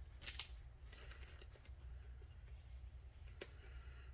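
Faint plastic rustling and light clicks as a trading card is slid into a clear soft plastic sleeve, with a sharper click about three and a half seconds in, over a low steady hum.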